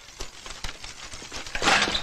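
Irregular clicks and rattles of bicycles ridden fast over rough ground, heard on a film soundtrack, with a louder burst of noise near the end.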